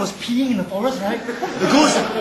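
Animated, exaggerated voices of actors speaking on stage, not caught as words, with a short breathy hissing rush near the end.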